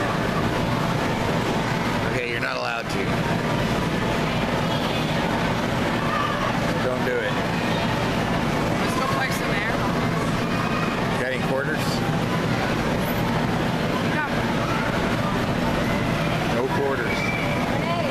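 Steady mechanical drone of the electric air blowers that keep inflatable bounce houses up, with children's voices and shouts scattered over it.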